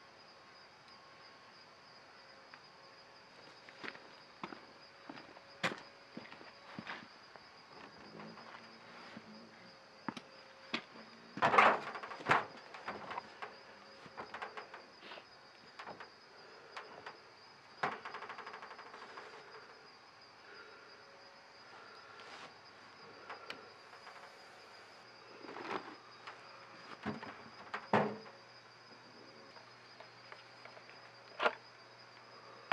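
A steady high-pitched insect chorus, such as crickets, with scattered clicks and knocks from equipment being handled on a beehive. The loudest knocks come a little before halfway and again near the end.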